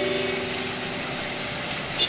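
Steady rush of many fountain jets spraying and splashing back into the basin, mixed with a low hum of road traffic.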